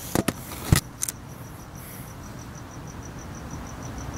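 A cricket chirping steadily, a high pulse about six times a second. In the first second, a few clicks and knocks of the camera being handled and set down.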